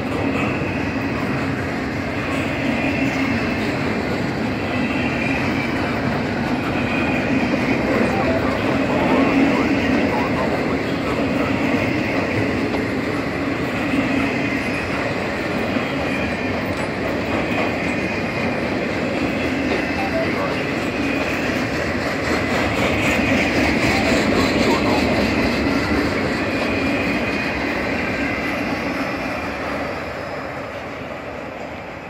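Cars of an intermodal freight train, double-stack container cars and trailer flats, rolling past at speed: a steady rumble of steel wheels on rail with clattering over the joints. It eases off near the end as the last cars go by.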